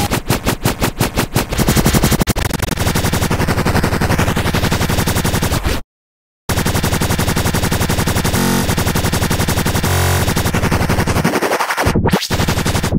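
Electronic beat playing back from GarageBand's Modern 808 drum kit and Syn Bass tracks: dense, rapid-fire drum hits over a synth bass line. It cuts out completely for about half a second midway, then resumes.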